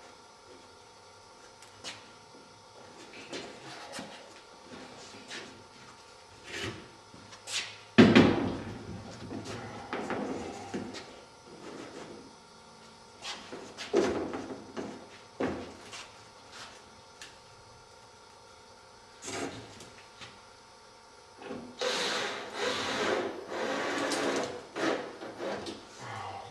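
Plywood skin and wooden batten strips being handled and set in place on a wing frame. Scattered wooden knocks and clicks, a sharp knock about eight seconds in, and a few seconds of rubbing and scraping near the end.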